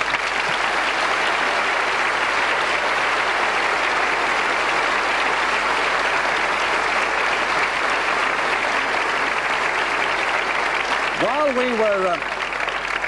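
Large theatre audience applauding, starting abruptly and holding steady. A man's voice starts over the tail of the applause near the end.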